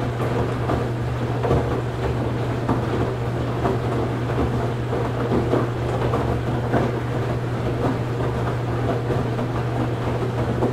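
Washing machine running: a steady low hum from the motor and turning drum, with an irregular swishing noise layered over it.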